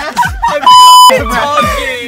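A loud, steady electronic beep lasting about half a second, a little under a second in, in the manner of an edited-in censor bleep. Underneath it, music with a steady thumping beat and excited voices shouting.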